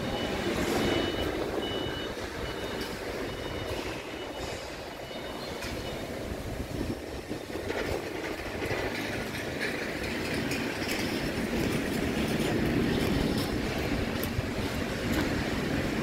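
Steady outdoor rumble and hiss, with a faint high beep repeating several times in the first few seconds.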